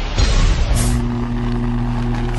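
Produced sound effects for an animated logo: a noisy whoosh at the start, then a steady low hum with two short bursts of hiss, one about three-quarters of a second in and one near the end.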